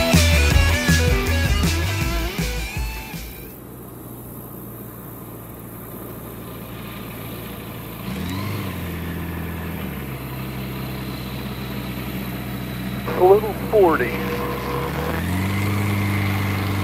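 Rock music fades out over the first few seconds. A taildragger bush plane's piston engine then runs at low power as it taxis on a gravel bar. Its pitch steps up about eight seconds in and again near the end as power is added.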